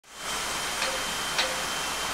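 Steady rushing of water at a canal lock, with two faint brief clicks about half a second apart.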